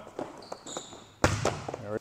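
A volleyball smacks once, loud and sharp, a little over a second in, with the hit echoing around the gym hall. A few faint taps come before it, and a brief high squeal is heard just before the hit.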